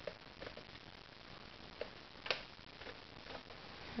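A few faint, scattered plastic clicks and taps, with one sharper click a little over two seconds in, from handling a Nerf blaster while its laser sight is switched on.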